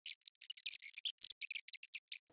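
A quick, irregular run of light, crisp scratches and clicks from hands working at the heater's wiring, with a sleeve brushing close to the camera.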